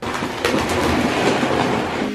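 Cordless stick vacuum cleaner running in a small cupboard, a steady rushing noise with scattered clicks and rattles of debris being sucked up.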